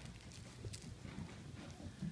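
Five-week-old Vizsla puppies scuffling at play on a blanket over carpet: faint scattered taps and scuffles of paws and small knocks.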